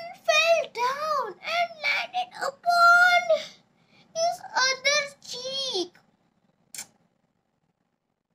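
A young girl's high voice making a run of short, sing-song vocal sounds with sliding pitch and some held notes. It stops about six seconds in, and a single faint click follows.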